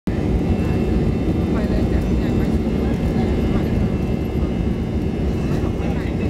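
Inside an airliner's cabin during the takeoff roll: the engines at takeoff power and the rumble of the runway make a loud, steady noise, heaviest in the low end.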